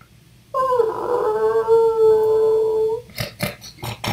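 A person's voiced imitation of a creature's long mournful wail, held steady and then sinking slightly in pitch. It is followed near the end by a quick run of short sniffs, the mother T-rex smelling her nest.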